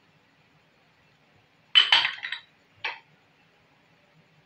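A small glass bowl knocking against metal while coloured sweets are tipped out of it over rice in an aluminium pot: a quick cluster of clinks about two seconds in, then a single clink a second later.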